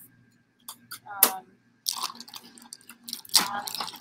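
A few short hissing spritzes from a trigger spray bottle of 70% isopropyl alcohol. Near the end, a plastic bag of grain spawn crinkles as it is picked up and handled.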